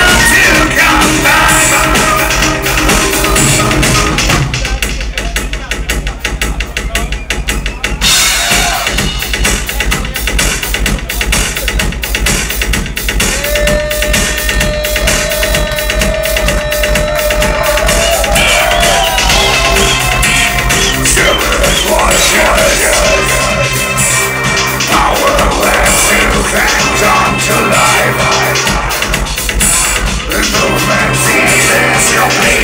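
Dark wave band playing live, loud, with synths over a driving kick drum. About four seconds in, the upper parts drop away for a few seconds, leaving mostly the beat, and then the full band comes back in.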